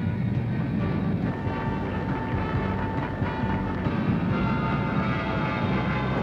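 Four-engine C-141 StarLifter jet transport's engines running steadily: a constant whine over a low rumble.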